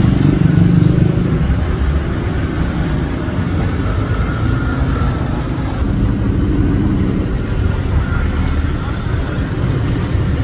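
Street traffic: motorcycles and scooters passing close by, their engines loudest in the first second or two and again around six to eight seconds, with voices in the background.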